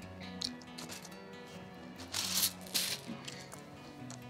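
Small game tokens rattling as they are drawn from a cloth bag, two short clattering bursts about two seconds in, over soft background music.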